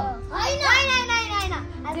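A child's voice speaking, mostly one drawn-out call that slides down in pitch.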